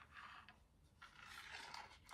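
Faint scraping of small metal charms being pushed across a wooden tray by fingertips, in two soft stretches: a short one at the start and a longer one in the second half.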